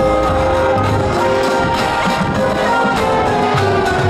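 A college marching band playing: brass horns holding chords over a steady drum beat.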